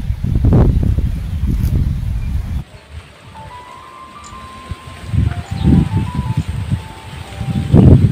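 Wind buffeting the microphone in low rumbles. About two and a half seconds in, the sound cuts to a quieter track with a few soft, sustained music notes, and wind gusts rumble on the microphone again near the end.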